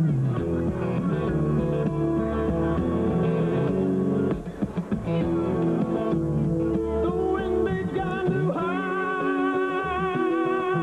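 Steel-string acoustic guitar played live, with notes ringing over one another, a brief drop in loudness about halfway through and long held notes near the end.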